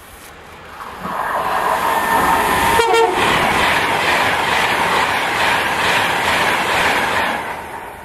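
A Virgin Trains tilting express train passing close at speed. Wheel and air noise builds about a second in, holds steady at full loudness, and falls away near the end. A brief tone sounds about three seconds in.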